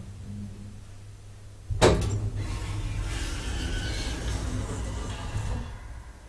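Small hydraulic elevator: a steady low hum, then a loud clunk about two seconds in, followed by about four seconds of louder mechanical rumbling and rattling that dies away near the end.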